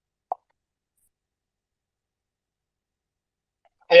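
Silence, broken once by a single short pop about a third of a second in; a man's voice says "ya" at the very end.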